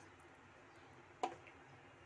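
Quiet kitchen with a single sharp tap a little over a second in: a spoon knocking against the aluminium pressure cooker as salt is added to the rice.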